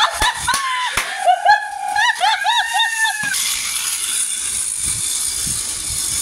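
A battery-operated toy train running steadily along its plastic track, with a child's high voice calling out over it for the first half, then only the train's running noise.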